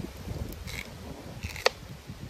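A kitchen knife cutting into a raw sweet potato: a few short, crisp crunches, then a sharp click about one and a half seconds in, over a low rumble.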